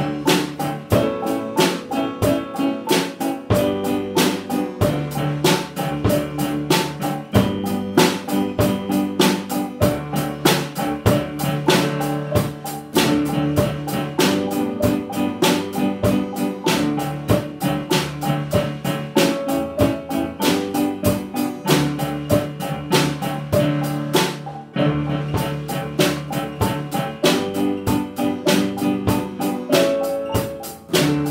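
A small band playing an instrumental piece on drum kit, acoustic guitar, xylophone and electronic keyboard, with the drums keeping a steady beat.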